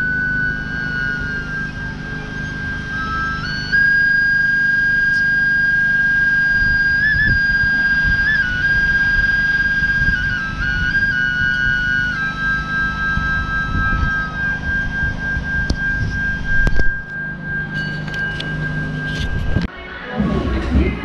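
Wooden flute playing long held high notes with small stepped changes in pitch and a second moving line beneath, over a low steady hum. It cuts off suddenly just before the end.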